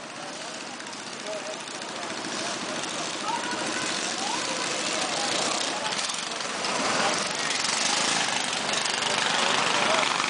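A crowd of mini bikes with small single-cylinder engines running and idling together, with people's voices over them, growing steadily louder.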